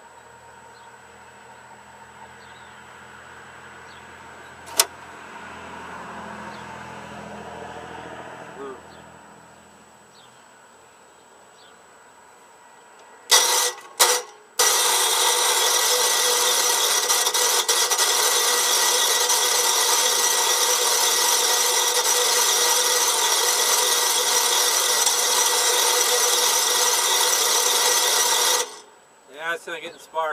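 Electric starter of a Massey Ferguson 8 garden tractor's 8 hp Tecumseh engine cranking without the engine catching: two short bursts, then one long, loud crank of about fourteen seconds that cuts off suddenly.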